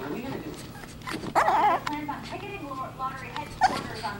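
Small long-haired white dog whining and yapping, with two louder outbursts: a wavering one about a second in and a sharp one near the end.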